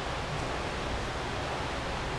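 Steady, even hiss with no distinct events: the background noise of a room recording.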